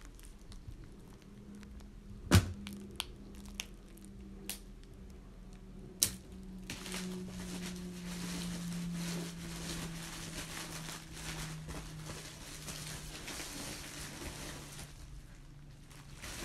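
Plastic packaging being handled: a few sharp snaps and clicks in the first seconds, the loudest about two seconds in, then steady rustling and crinkling of plastic bags for most of the rest, over a faint low hum.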